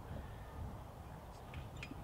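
Quiet outdoor background with a faint low rumble, and a few faint light clicks near the end.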